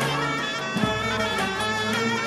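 Zeybek folk music: a reedy wind instrument plays a wavering, ornamented melody over slow, unevenly spaced drum beats.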